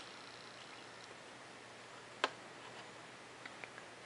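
A steel ruler being handled and repositioned against a foam-board wing: one sharp click a little past halfway, then a few faint ticks near the end, over quiet room tone.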